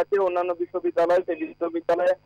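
Speech only: a voice talking in short runs of words with brief gaps, over a faint steady low hum.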